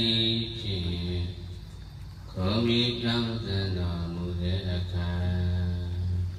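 A Buddhist monk chanting into a microphone: one male voice in slow, drawn-out phrases of held notes, with a short pause about two seconds in before the next phrase.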